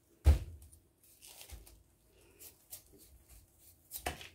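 A heavy Korean radish set down on a plastic tarp with one sharp thump just after the start. Faint rustling and scraping follow as the radishes are shifted across the tarp.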